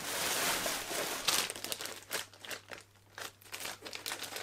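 Christmas wrapping paper rustling and crinkling as a wrapped present is picked up and handled: a steady rustle for about the first second, then a run of short crackles that thin out toward the end.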